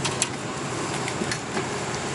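Steady roadside traffic hum from passing engines, with a couple of light clicks.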